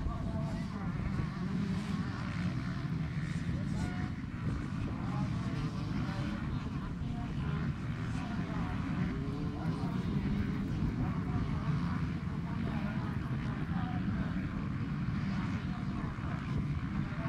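Several off-road racing motorcycles running out on the course, their engines heard together as a continuous mixed engine noise with rising and falling pitches, with spectators talking over it.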